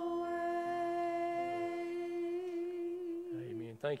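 Two women singing the last long note of a church hymn, one steady held pitch that ends about three seconds in. A man starts speaking right at the end.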